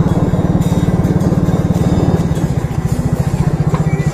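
Small motorcycle engine idling, a rapid, even putter.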